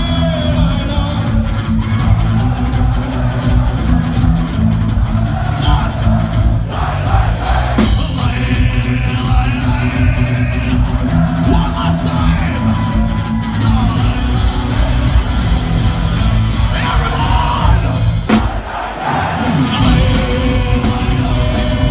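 Folk metal band playing live and loud: distorted electric guitars over heavy bass and drums. Near the end the low end drops out briefly, then the full band comes back in.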